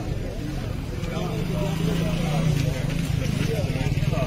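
Indistinct men's voices talking over a steady low engine hum.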